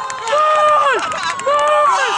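Spectators' raised voices shouting two long, drawn-out calls, each held and then falling off in pitch, over the general noise of the crowd.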